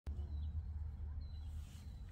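Outdoor ambience: a steady low rumble, like wind on the microphone, with two faint, high bird chirps.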